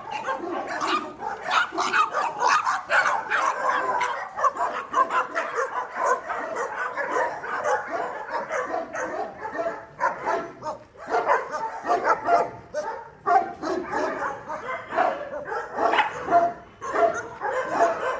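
Many kennelled dogs barking and yipping at once in a dense, unbroken chorus of overlapping calls.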